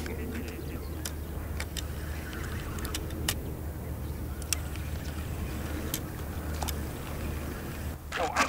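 Scattered sharp clicks from a spinning fishing reel being handled, with the line worked into the reel's line clip, over a steady low rumble.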